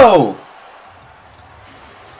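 A man's drawn-out shout, falling in pitch, dies away about half a second in. After it come faint arena background and low thuds of a basketball being dribbled on a hardwood court.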